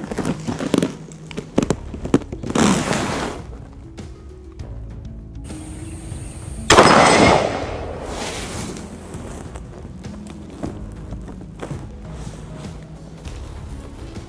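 A single revolver shot from a long-barrel revolver about seven seconds in, sudden and the loudest sound, ringing away over about a second. Background music plays underneath.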